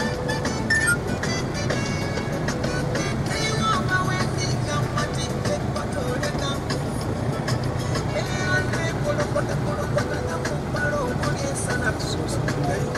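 Music playing inside a moving car's cabin, over the car's steady engine and road rumble.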